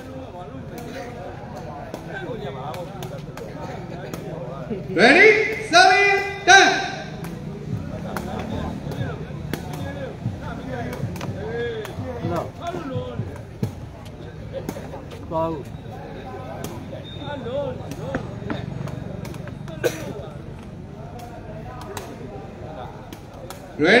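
Crowd chatter at a sepak takraw match, with three loud voice calls about five to seven seconds in, and short sharp taps of the sepak takraw ball being kicked.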